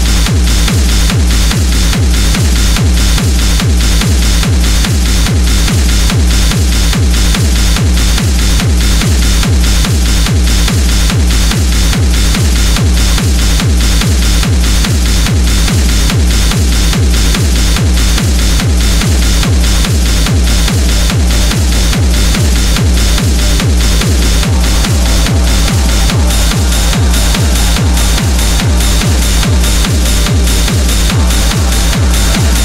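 Industrial techno: a steady four-on-the-floor kick drum at a little over two beats a second under a dense, noisy layer of high percussion.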